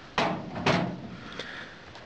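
Two metal cabinet doors of a tool chest being swung shut, giving two clunks about half a second apart, then a faint tick.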